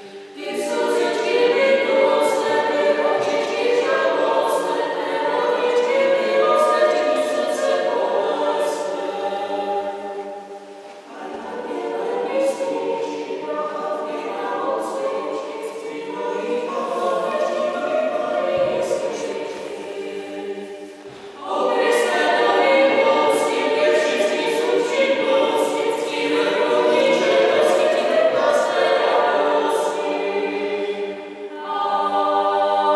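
Choir singing in sustained phrases. The sound drops briefly between phrases about ten and twenty-one seconds in.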